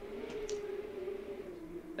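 A pause in speech: a steady faint hum holds one slightly wavering pitch throughout, with a brief soft click about halfway through.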